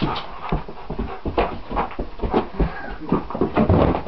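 A Weimaraner leaping at a light on the wall: a quick, irregular run of thumps and scrabbling claws against the wall and floor, with the dog panting.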